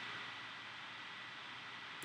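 Laptop cooling fan running: a steady, faint hiss with a thin, steady high tone beneath it.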